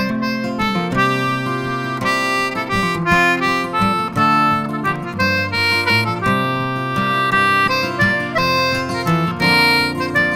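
Instrumental Irish folk music: a wind or reed instrument plays a quick melody of held notes over plucked strings.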